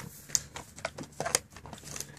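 English Mastiff gnawing and crunching on a chew: a string of irregular crunches and clicks, several a second.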